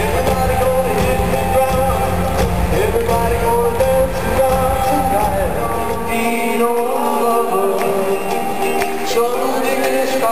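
Live rock band playing in an arena, recorded from the audience, with heavy bass and drums. About six seconds in, an abrupt cut leaves a lone singer with guitar and no bass underneath.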